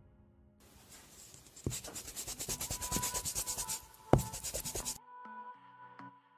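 Scribbling sound effect of a pen scratching quickly back and forth on paper, several strokes a second, over a thin held tone. A sharp knock comes about four seconds in, and the scribbling cuts off suddenly about a second later, leaving a few soft musical tones.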